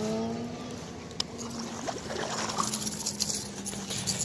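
A steady low motor hum, with an engine rising in pitch and fading out in the first half second, and a single sharp click about a second in. Faint water splashing comes from a hooked bass being brought to the bank.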